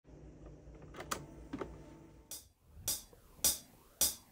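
Yamaha MT50 four-track cassette recorder's transport clicking as play is pressed, over a faint hum. Then four evenly spaced clicks about half a second apart play back from the tape: a count-in before the music.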